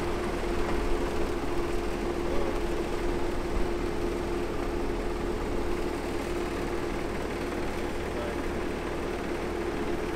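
A car engine idling steadily, with a constant hum over a low rumble.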